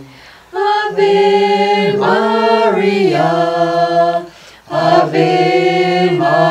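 Two men and a woman singing a hymn to Mary together, unaccompanied, in long held notes. The singing breaks off briefly at the start and again about four seconds in, where they take a breath.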